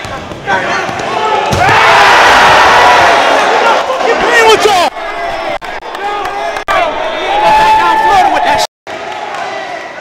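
A gym crowd bursts into shouting and cheering right after a slam dunk, loudest from about a second and a half in until about five seconds. Basketball bounces and the slam of the dunk come before it, and scattered shouting voices follow.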